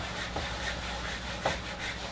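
Whiteboard eraser rubbed back and forth across the board in a continuous scratchy swishing, with a few sharper strokes.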